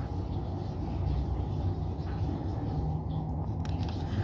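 A steady low background rumble, with a few faint ticks about three and a half seconds in.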